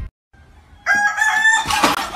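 Rooster crowing, starting about a second in after a brief silence, a long held call that turns rougher near the end.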